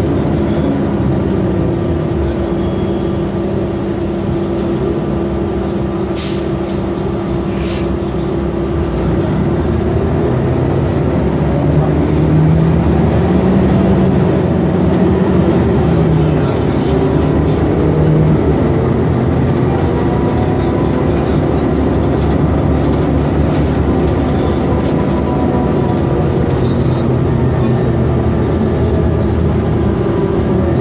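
Cabin sound of a 2002 New Flyer D40LF transit bus with its Detroit Diesel Series 50 engine running, getting louder and rising in pitch about twelve seconds in as the bus pulls harder. Two short hisses come at about six and eight seconds.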